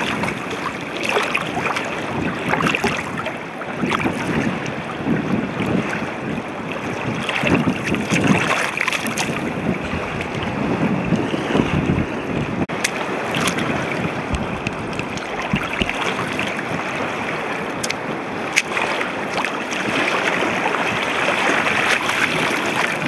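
Sneakers sloshing and splashing through shallow seawater over rock, with a continuous wash of water that swells and falls throughout.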